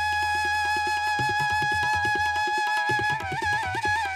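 Instrumental background music: a flute holds one long note over a steady percussion rhythm, then breaks into quick wavering ornamented notes near the end.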